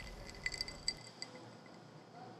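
A few faint, light glass clinks, four or five short ticks about half a second to a second and a quarter in, over a thin steady ringing.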